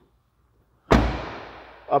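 A car's rear side door is shut with a single solid slam about a second in, dying away over most of a second.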